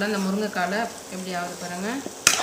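A woman talking over the faint sizzle of drumstick pieces frying in a pan as they are stirred.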